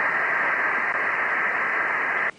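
Steady applause filling a parliament chamber in an old archival recording, heard as an even, hissing noise.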